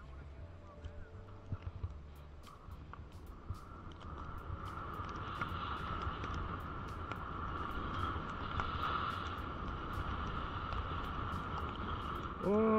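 Snow hissing steadily under a rider sliding downhill through fresh powder, growing louder about four seconds in as the ride picks up speed, with wind rumbling on the camera's microphone.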